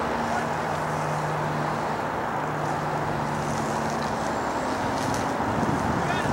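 Steady outdoor rumble and hiss with a faint, even low motor hum.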